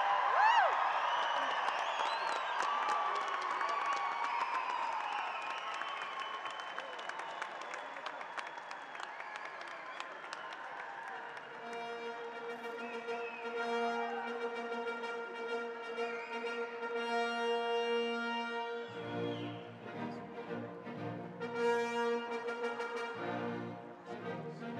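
Arena crowd cheering and clapping, then a brass band playing a slow processional from about halfway, with sustained horn and trombone notes and deeper notes joining near the end, as the graduating class enters.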